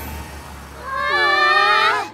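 Cartoon scene-transition sound effect: a soft whoosh, then a high, drawn-out, voice-like tone that bends in pitch for about a second before cutting off.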